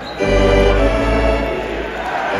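Arena organ playing a loud held chord that comes in abruptly about a quarter of a second in and dies away near the end.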